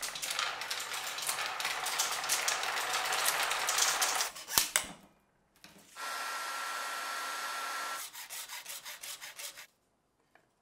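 Rapid scratchy clicking and rasping for about four and a half seconds, ending in a sharp click. After a short pause an aerosol spray can hisses steadily for about two seconds, then in a string of short pulsing bursts.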